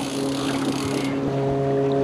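Boat's outboard motor running steadily at low speed, a constant even hum under a hiss.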